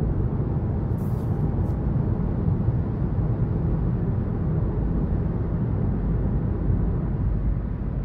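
Steady in-cabin driving noise of a 2023 Hyundai Venue SEL on the move: low road and tyre rumble mixed with its 1.6-litre naturally aspirated four-cylinder and IVT running. Two faint brief hisses about a second in.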